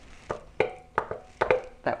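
About half a dozen short, sharp taps and clicks on metal canning-jar lids and glass jars, as the lids are pressed and handled to check that they have sealed.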